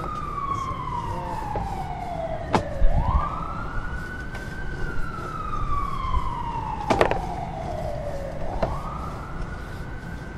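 Emergency vehicle siren wailing: the pitch climbs quickly and then falls slowly, twice, with a couple of sharp clicks over a steady low rumble.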